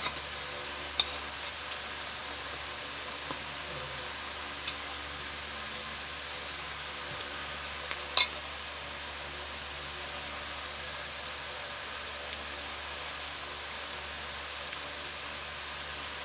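Steady background hiss in a small room, with a few faint short clicks of eating and one louder brief mouth sound about eight seconds in.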